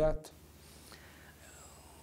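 The last syllable of a man's spoken question cuts off just after the start, then quiet room tone with no other distinct sound.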